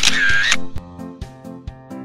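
A short camera-shutter sound effect in the first half second, then background music with a steady beat of about two strokes a second.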